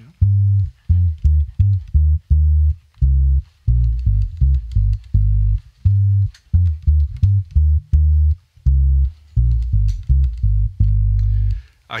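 Early-1960s Gibson EB-0 electric bass played fingerstyle: a line of short, separately plucked low notes, each cut off quickly with little sustain because the strings are damped by rubber under the bridge cover, ending on one longer held note near the end.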